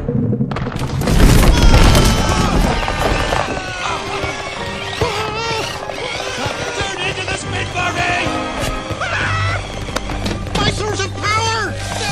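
Cartoon sound effects of a toy car crashing into a tall bin of bouncy balls: a heavy crash about a second in, then a long scatter of balls bouncing. Film score plays throughout, with voices calling out.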